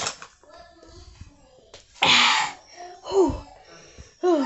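A woman drinking ice-cold water from a plastic cup, then a loud, sharp breathy gasp about halfway through and a short falling moan a second later, a reaction to the cold.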